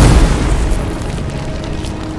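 A deep cinematic boom sound effect, loudest at the start and dying away over the next second or so, with music underneath.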